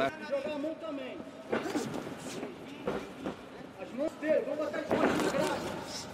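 Men's voices shouting and calling out over the noise of an arena crowd, with a few brief knocks.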